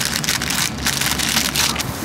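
Plastic wrap around a stack of flour tortillas crinkling as it is cut open with scissors and handled: an irregular crackling rustle.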